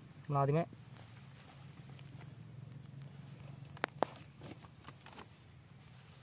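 Faint clicks and rustles of hands working a budding knife against the bark of a thin rambutan rootstock stem, with two sharper clicks about four seconds in.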